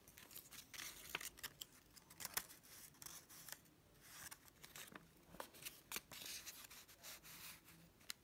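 Folded paper rustling and crackling faintly as it is handled and pressed, an irregular string of short soft crackles and scrapes.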